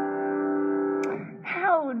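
Upright piano chord held and ringing, then stopping about a second in. A person's voice starts just after.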